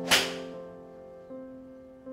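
A golf iron strikes a ball with one sharp crack just after the start, which then fades quickly. Soft background piano chords play throughout and change about a second and a half in.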